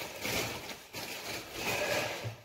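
Irregular rustling and handling noise from someone moving about a kitchen, fetching bread.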